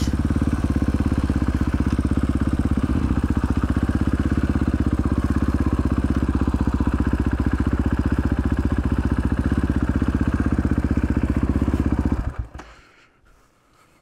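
KTM 500 EXC single-cylinder four-stroke engine with an FMF exhaust, no dB killer, running at low revs with a steady rapid beat as the bike rolls slowly. About twelve seconds in the engine is shut off and dies away within a second.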